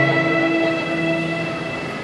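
Live band's instrumental lead-in: a long held chord of sustained notes, slowly fading.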